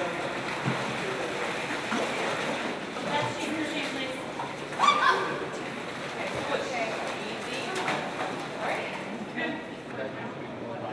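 Water splashing and sloshing in a shallow holding pool as people wade and a shark and net are moved through it, under indistinct voices. A louder voice rises about five seconds in.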